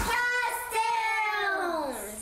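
A young child's high voice singing out a long held note in a couple of breaths, then sliding down in pitch near the end.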